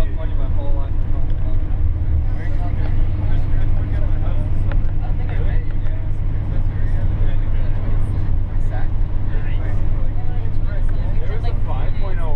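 Steady low drone of a bus's engine and tyres heard from inside the cabin while driving on a highway, with indistinct voices talking throughout.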